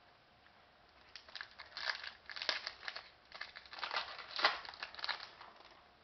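Hockey trading cards being handled on a table: a run of irregular crinkling rustles and clicks that starts about a second in.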